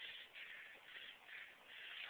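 Near silence: a faint, uneven hiss.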